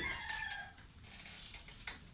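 A rooster crowing in the background, the call tailing off within the first second.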